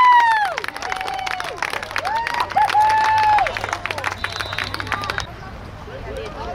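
Spectators cheering a big play at a football game: long drawn-out yells with hand clapping. The sound cuts off suddenly a little after five seconds in.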